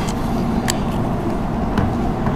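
Steady low background rumble of the hall's room and amplification noise, with a single short click about two-thirds of a second in.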